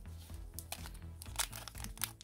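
A trading card booster pack wrapper crinkling as it is picked up and handled, with a few short crackles in the second half. Quiet background music underneath.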